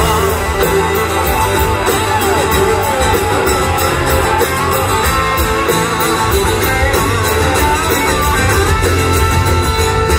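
Rock music instrumental break: guitars, with bending lead lines, over bass and a steady drum beat.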